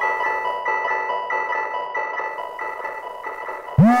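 Organelle digital synthesizer playing a soft, mallet-like note repeated about every two-thirds of a second, slowly fading. Near the end a deep synth tone sweeps sharply upward in pitch.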